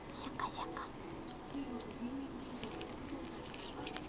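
Toothbrush bristles scrubbing a Maine Coon cat's teeth while the cat chews at the brush: a run of short, dry scratching clicks, with a brief soft voice-like sound about half a second in.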